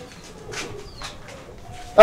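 Faint bird calls behind a quiet moment.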